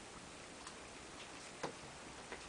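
A few faint clicks of a cat's claws and paws on the plastic casing of a TV, with a louder tap near the end, over a low hiss.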